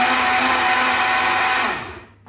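Breville personal blender running steadily as it blends a liquid chilli-and-spice marinade, then winding down with a falling pitch and stopping near the end.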